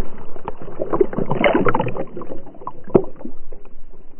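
Lake water splashing and sloshing around a swimming dog, heard right at the waterline from a camera on its back. Sharp splashes are scattered throughout, with a denser burst of splashing about a second and a half in.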